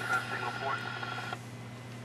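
CB radio receive audio from its speaker: a steady whistling tone mixed with faint garbled voice that cuts off a little over a second in, over a steady low electrical hum.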